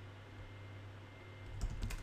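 Computer keyboard typing: a quick run of keystrokes starts about one and a half seconds in, over a low steady hum.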